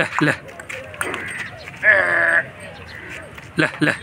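A single short, bleat-like farm-animal call about halfway through, held for about half a second on a steady pitch.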